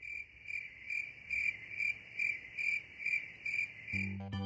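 Cricket chirping: a steady, regular run of short, high chirps, about two and a half a second.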